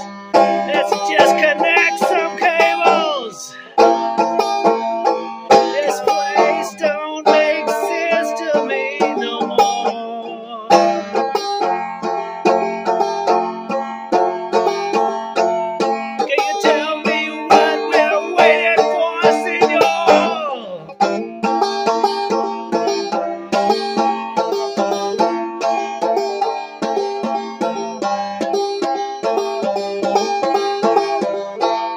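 Banjo strummed in a steady rhythmic chord pattern as an instrumental break, with a wavering higher line over it at a few points.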